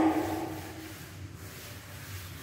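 Board duster wiping a chalkboard: a faint, steady rubbing.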